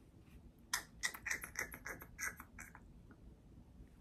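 A makeup brush working in a pressed-powder eyeshadow palette, with the palette handled: a quick run of about a dozen faint taps and scratches over about two seconds.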